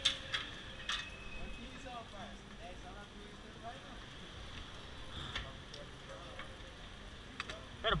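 Faint indistinct voices and a few sharp clicks and taps from hands working a stopped motorcycle, with no engine running: it has run out of fuel.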